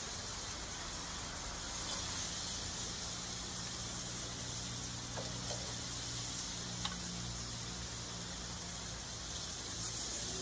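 Raw meat sizzling steadily on a hot gas grill's grates as more pieces are laid on, with a few light clicks of metal tongs against the grate a little past the middle.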